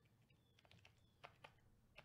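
Near silence with a few faint, scattered clicks of typing on a computer keyboard.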